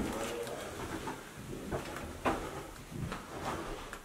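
Irregular footsteps and scattered light knocks, with a faint voice in the background.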